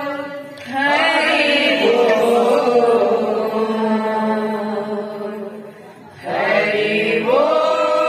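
Kirtan singing: voices chanting a devotional phrase together in long held notes. The sound dips briefly about half a second in and again around six seconds in, and each time a new phrase starts, rising in pitch before settling.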